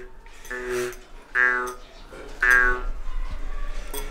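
A small metal jaw harp being played in short twangs: four brief droning notes about a second apart, each with a shifting buzz of overtones.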